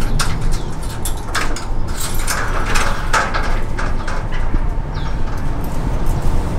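Glass sliding door and metal security grille being unlatched and slid open: a run of clatters and scraping over a steady low rumble. A bird gives a short falling chirp about five seconds in.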